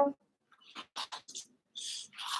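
Slicker brush raking through a Cavoodle's coat at the base of its tail: a few short brushing strokes, then a longer one near the end.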